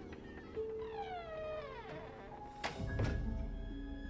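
Tense horror film score: held low tones under a long, falling, wailing cry, then a sudden sharp stinger hit about two and a half seconds in with a low boom after it.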